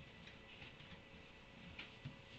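Faint, irregular crackling and crunching, a few soft clicks spread across the two seconds: a donkey pulling hay from a hay net and chewing it.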